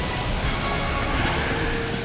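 Cartoon soundtrack music mixed with a rushing sound effect of a speeding race car.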